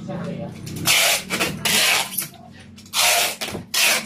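Packing tape being pulled off its roll and pressed onto a cardboard box, in four rasping strips: a long one about a second in, a shorter one just before two seconds, another about three seconds in and a brief one near the end.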